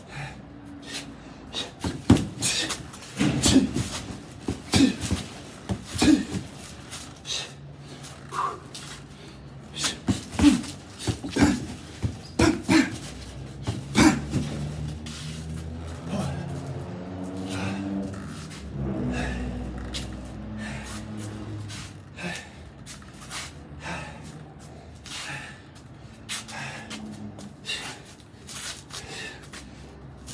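Gloved punches landing on a duct-taped heavy bag in irregular clusters of thuds, with sharp breaths pushed out between them.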